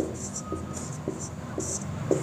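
Marker pen writing on a whiteboard: several short, faint scratchy strokes.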